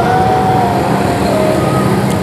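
Road traffic noise: a motor vehicle engine running steadily close by.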